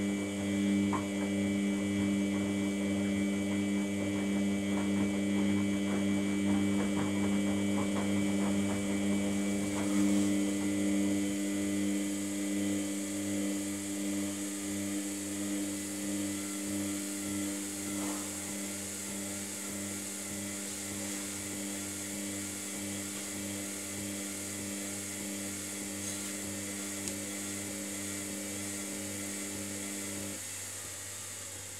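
Samsung WF80 washing machine's drain pump running with a steady hum while the drum turns, with a scatter of faint clicks in the first ten seconds; it cuts off suddenly at the very end.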